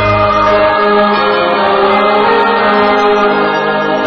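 Opening theme music: a choir singing long, sustained chords with instrumental backing.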